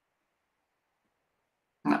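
Near silence during a pause, then a man's voice starts speaking right at the end.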